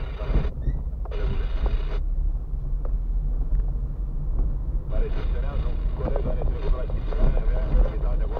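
Car driving along a rough, broken concrete lane, heard from inside the cabin: a steady low rumble of tyres and engine. A voice comes in briefly near the start and again from about five seconds in.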